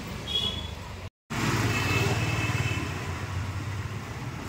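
Road traffic with a vehicle engine running steadily. The sound drops out completely for a moment about a second in, and a brief high-pitched tone sounds near the start and a longer one about two seconds in.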